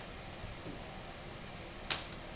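Steady low hiss of room tone, broken near the end by one sharp, loud click.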